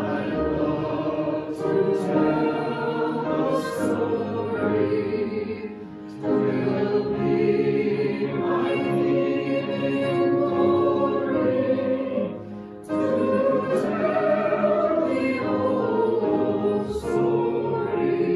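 Many voices singing a hymn together, in sung phrases with brief breaks about every six to seven seconds.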